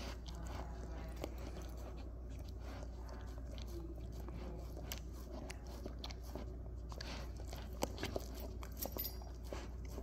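A dog licking and nibbling at a small round green object held to its mouth: faint wet licks and light mouth clicks, with a few sharper clicks near the end.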